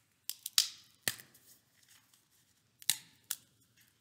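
Large unleavened communion wafer snapped by hand at the breaking of the bread: a quick run of sharp, crisp cracks in the first second, then two more a little under three seconds in.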